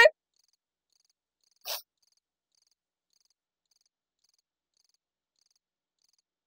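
Crickets chirping faintly at a steady rhythm of about two chirps a second. A single short, soft noise comes a little under two seconds in.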